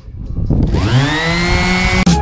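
Electric quarter-sheet finishing sander switched on: its motor whines up in pitch over about a second, then runs steady.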